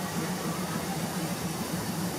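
Steam locomotive standing at rest, giving a steady hiss with a low, uneven rumble underneath.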